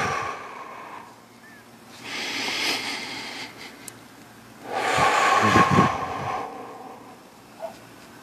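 A man's slow, deep breathing in a resting stretch: two long, audible breaths, the second louder and longer than the first.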